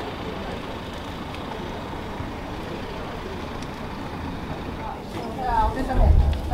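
Steady outdoor background noise with faint voices in it. A person's voice comes in clearly near the end.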